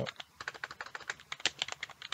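Rapid typing on a computer keyboard: a quick, irregular run of keystroke clicks.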